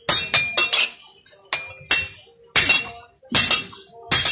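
Hand hammer striking a metal propeller blade on a steel anvil: about eight sharp, ringing blows, a quick run of four in the first second and then slower, heavier strikes.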